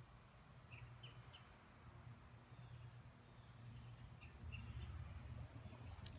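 Near silence: faint outdoor ambience with a few short, high chirps about a second in and again near the end, over a low rumble of the phone being handled that grows a little in the last second and a half.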